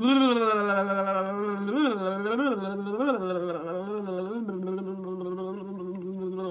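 A woman's voice holding one long voiced sigh as a jaw-loosening vocal warm-up. It drops slightly at the start, then holds a steady low note with a few brief upward wobbles in pitch while her hands massage her jaw.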